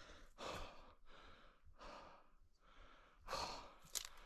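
A man breathing in pain: a few quiet, heavy sighs and breaths, each about half a second long, with a longer pause before the last one. He is hurting after slamming his groin when his foot slipped off the pedal.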